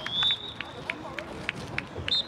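A referee's whistle gives a short blast that rises slightly in pitch at the start, over a murmur of spectators talking in the stands, with a few sharp knocks after it.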